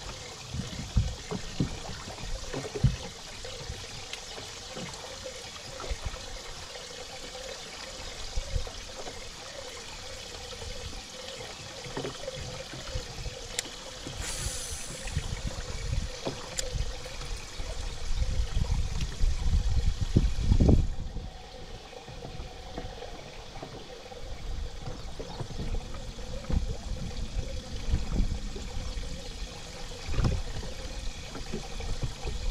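Small waves lapping and splashing against the hull of a small boat, with irregular low rumbles of wind on the microphone that are strongest about two-thirds of the way through.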